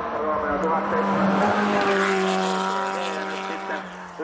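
Rally car passing at speed on a gravel stage, its engine held at a high, steady note, with gravel and tyre noise loudest in the first two seconds.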